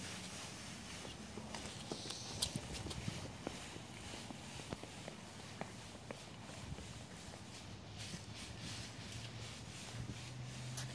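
Footsteps walking and shuffling through deep drifts of dry fallen leaves, an irregular crackling rustle with small crunches, one louder crunch about two and a half seconds in.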